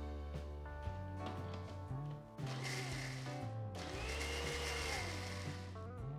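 Electric mixer grinder running in two short pulses, about two seconds in and again near the middle, grinding a paste in its stainless-steel jar, over background music.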